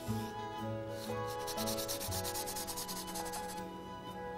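Soft chalk pastel scratching across paper in rapid back-and-forth strokes as a patch of colour is filled in. The strokes are densest from about a second and a half in until shortly before the end.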